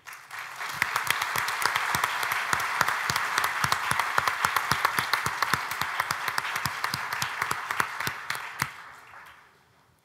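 Audience applauding: many people clapping, building up within the first second, holding steady, then dying away about nine seconds in.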